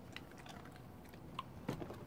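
Faint, scattered clicks and taps of a dog's claws on a wooden deck and an incline board, a little louder near the end.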